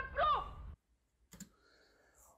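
A woman's line of TV dialogue ends in the first half second, the sound drops to near silence, and a quick pair of computer clicks comes about a second and a third in.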